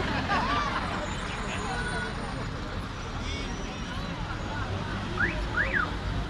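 Street traffic with a city bus's engine running close by, a steady low rumble under the chatter of a watching crowd. Two quick high rising-and-falling tones sound near the end.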